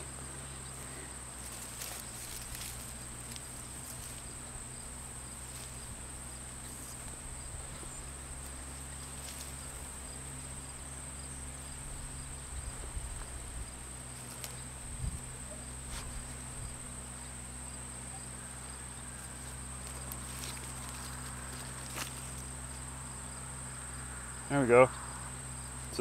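Insects trilling steadily at a high pitch, with faint rustling and soft scrapes of hands digging through garden soil around the middle.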